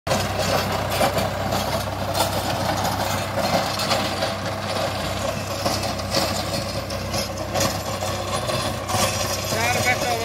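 Tractor's diesel engine running steadily under load while the rotary tiller behind it churns dry soil, a constant mechanical rumble with a clattering wash on top. A voice begins near the end.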